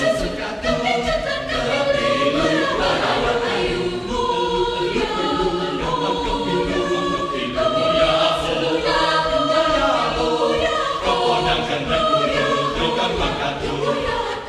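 Choir singing an Indonesian folk song from Banyuwangi a cappella, several voice parts moving together in harmony.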